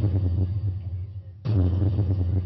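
A loud, low amplified chord struck on electric strings twice, about two seconds apart, each hit ringing out and slowly fading.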